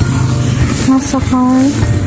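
A woman's voice speaking over background music.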